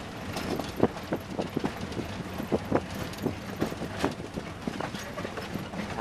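Inside a vehicle driving on a rough dirt track: a steady low rumble of engine and tyres, with irregular knocks and rattles as the vehicle jolts over ruts and bumps.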